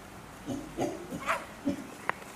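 Chimpanzees grunting: a quick run of about five short, low grunts starting about half a second in.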